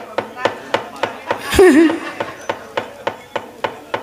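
Steady rhythmic knocking by the dalang's cempala, about three to four sharp knocks a second, keeping time for the wayang kulit performance. A short vocal exclamation breaks in about a second and a half in and is the loudest sound.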